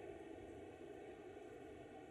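Near silence: faint steady room tone with a low hiss.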